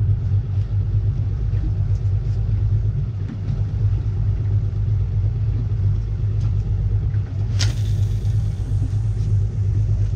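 Steady low rumble of the boat's idling outboard motor, with a short sharp hiss about seven and a half seconds in.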